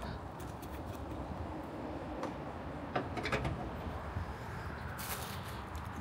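A few faint clicks and knocks from the hood of a Subaru Crosstrek being released and lifted open, over steady outdoor background noise.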